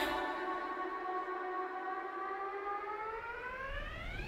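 A single sustained pitched tone with overtones, fading slowly as it sinks a little in pitch, then sweeping steeply upward near the end.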